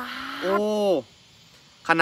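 A person's voice exclaiming a drawn-out "oh" (โอ้): breathy at first, then voiced and falling in pitch, ending about a second in.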